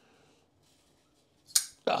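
A Kubey KB360 Tityus titanium flipper knife flicked open once, about a second and a half in: a single sharp snap as the blade swings out on its ceramic bearings and locks. The detent is a little on the lighter side but fine.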